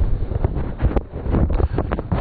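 Wind buffeting the microphone, a steady low rumble, with a few light knocks and one sharp click about a second in.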